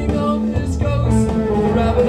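Live rock band playing an instrumental passage: guitar and bass sustaining chords over drums, with occasional cymbal hits.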